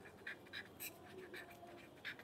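Pen writing on paper: a faint run of short, irregular scratches as the words are written stroke by stroke.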